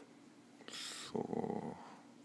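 A person's short breathy hiss, then a low, creaky throat sound lasting about half a second.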